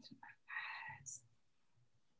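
A faint, breathy whisper from a person on the call in the first second, with a short hiss just after it, then near silence.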